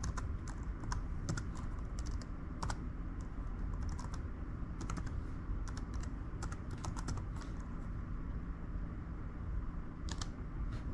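Typing on a laptop keyboard: irregular key clicks, a few per second, thinning out near the end, as a Wi-Fi password is entered.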